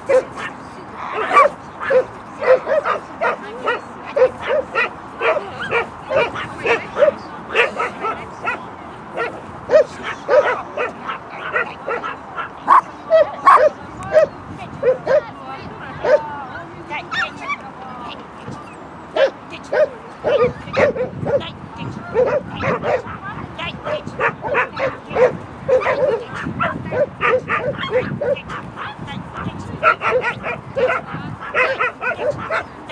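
Shetland sheepdog barking excitedly in play: a long run of short, high yaps, one to three a second, with a brief lull about halfway through.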